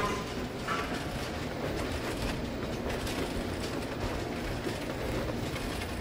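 Shopping cart rolling along a supermarket aisle, its wheels rattling steadily on the floor.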